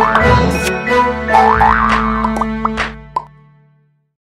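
Short cartoon-style jingle with a wobbling sliding tone and light clicks, fading out about three and a half seconds in.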